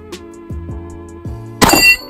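A single pistol shot from a 1941 German Luger in 9 mm about one and a half seconds in, with the ring of the struck steel target in it, over background music with a steady beat.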